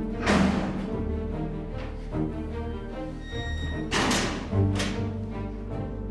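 Dramatic background score with a pulsing low beat under sustained tones, marked by two sharp swishing accents: one just after the start and one about four seconds in.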